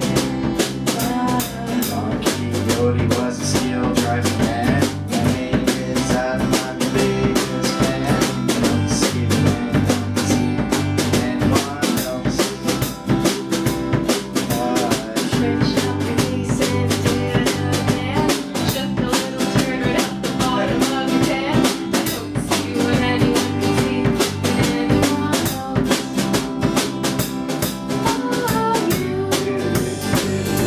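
A small band playing live: acoustic guitar, bass guitar and a drum kit keeping a steady beat.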